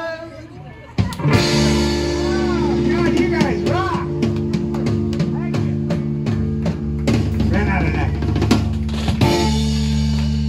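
Live blues-rock trio of electric guitar, electric bass and drum kit coming in loud about a second in and playing on, with sustained guitar and bass notes under repeated drum hits and cymbal crashes.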